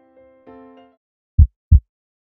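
Soft electronic keyboard notes fade out just under a second in. After a short gap comes a heartbeat sound effect: one low, loud double thump, lub-dub.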